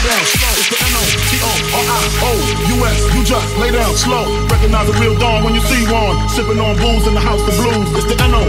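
Electronic dance music from a DJ set. A build with a steady kick drum and a rising noise sweep breaks about a second in into a heavy, sustained bass with rap vocals over it.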